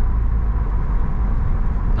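Steady low rumble of a car driving at speed, heard from inside its cabin: tyre and road noise on a concrete expressway.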